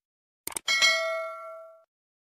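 Subscribe-button animation sound effect: a couple of quick mouse clicks about half a second in, then a bell ding that rings on and fades away over about a second.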